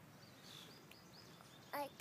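Quiet outdoor background with a few short, faint bird chirps in the first half, then a woman's voice begins just before the end.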